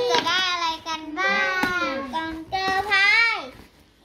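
A young girl's high voice, singing or chanting in several drawn-out, sliding phrases. A single sharp click comes about halfway through, and the voice stops shortly before the end.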